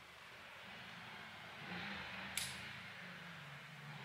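Faint outdoor background hiss with a short swell of noise about two seconds in, and a single sharp click in the middle of it.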